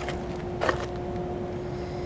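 A steady low hum on one pitch, with a single short click about two thirds of a second in.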